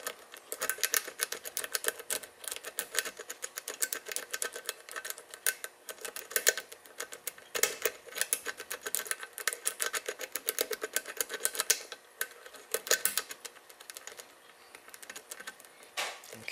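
Steel lock pick rocked up and down against the pin tumblers in the paracentric keyway of a Best interchangeable-core lock under tension: a rapid run of small metallic clicks as the pins are bounced toward the shear lines. The clicking thins out after about twelve seconds, with one short flurry near thirteen seconds.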